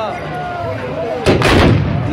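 A volley of black-powder muskets (moukahla) fired together by a line of charging tbourida horsemen: a ragged burst of several near-simultaneous shots about 1.3 s in, over crowd voices.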